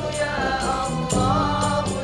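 A choir singing a melody together, accompanied by hand-held frame drums (rebana) beating a steady quick rhythm.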